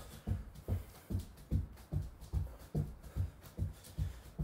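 Socked feet landing on a wooden floor in quick, even thuds during fast heel-flick running on the spot, about two and a half landings a second.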